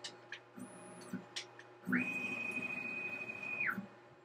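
Onefinity CNC's stepper motors whining through a jog move lasting about two seconds: the pitch climbs quickly to a steady high tone, holds, and drops away as the move stops. A few faint clicks come before it.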